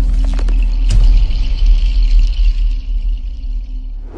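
Logo-reveal sound effect: a deep sustained bass rumble under a steady high shimmer, with a few sharp clicks in the first second, fading toward the end.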